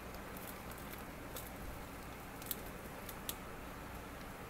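Aquarium sump water trickling steadily as it drips through the holes of a drip tray onto polyester filter pads, with a few sharp ticks of single drips.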